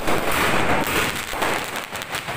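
Aerial fireworks bursting overhead, with a sharp bang right at the start and a dense crackle of sparks running through.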